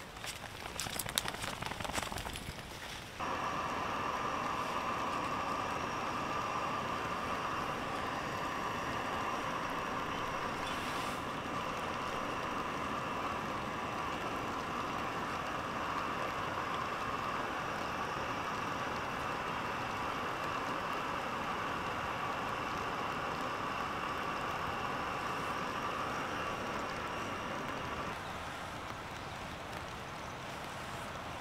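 Footsteps rustling through grass for about three seconds. Then a gas canister cooking stove (Firemaple Star X1) burns with a steady hiss, which drops away about two seconds before the end.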